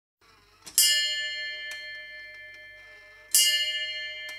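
A bell struck twice as a song's intro, about two and a half seconds apart, each strike ringing out with many clear tones and slowly fading, with a faint lighter tap between them. The track is slowed down and lowered in pitch.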